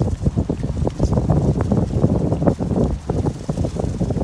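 Strong wind buffeting the microphone: a loud low rumble that gusts up and down unevenly.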